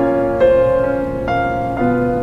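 Slow background piano music, with new chords struck three times, each left ringing.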